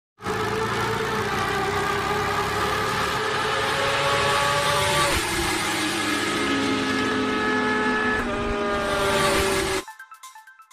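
Motorcycle engine sound effect in an animated intro: a steady engine note over a hiss that steps down in pitch about halfway through and again near the end, then cuts off suddenly.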